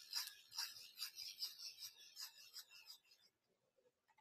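Graphite lead of a mechanical lead holder being sharpened in a lead pointer: faint, quick scratchy grinding strokes at about three to four a second, stopping about three seconds in.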